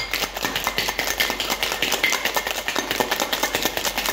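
Ice cubes rattling inside a stainless-steel cocktail shaker being shaken hard, a rapid, even clatter of knocks against the metal.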